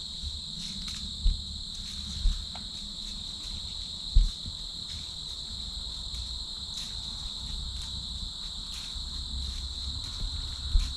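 Steady high-pitched trilling of insects in the woods, with a few short low thumps about one, two and four seconds in.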